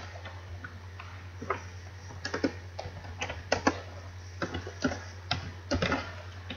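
Computer keyboard typing: irregular keystroke clicks, a few a second, some in quick runs.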